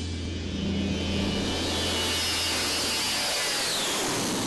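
Four-engined jet airliner taking off and passing overhead. The engine noise builds, and a high whine drops in pitch near the end as the aircraft goes by.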